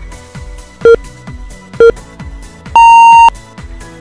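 Workout interval timer counting down: three short beeps about a second apart, then one longer, higher beep marking the end of the work interval. Electronic background music with a steady beat runs underneath.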